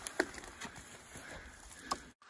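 Faint rustling of a felled tree's branches being dragged across a dirt trail, with a couple of short sharp cracks or snaps, one just after the start and one near the end.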